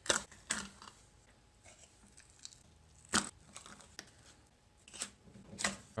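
Scrap-wood boards of a mold box being pulled away from a cured Dragon Skin 30 silicone block by hand: a few sharp wooden clacks, the loudest about three seconds in and again near the end, with faint handling noise between.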